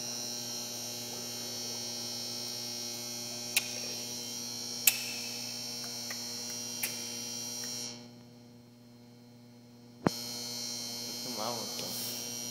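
A steady electrical hum with several sharp clicks partway through. The hum drops away about eight seconds in and comes back about two seconds later with a sharp click.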